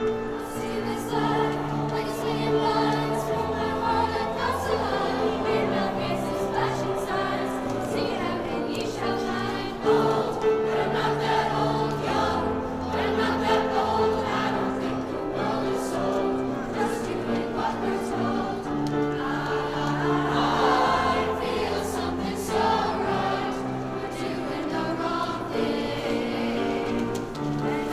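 Middle school choir singing in parts, with piano accompaniment holding chords beneath the voices.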